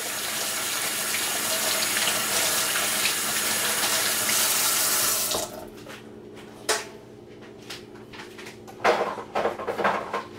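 Kitchen tap running into a sink, shut off abruptly about five seconds in, followed by a few scattered knocks and clatters.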